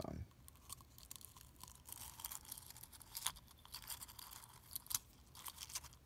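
Faint scattered clicks and light rustling as a small plastic waterproof match case with matchsticks inside is handled, the sharpest clicks about three seconds in and near five seconds.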